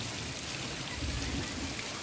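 Heavy rain falling in a steady hiss, with water running and pouring off a roof. A low rumble rises briefly about a second in.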